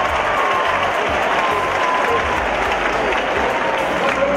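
Stadium crowd applauding steadily after a play in a college football game, with music playing underneath.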